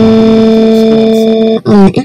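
A loud, steady held tone at one fixed pitch with many overtones, which breaks off about a second and a half in for a short voice-like sound.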